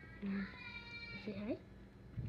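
Domestic cat giving one meow, just under a second long, about half a second in.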